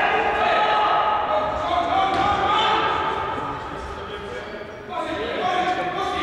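Futsal players shouting to each other in a large echoing sports hall, with a ball thudding and bouncing on the wooden court.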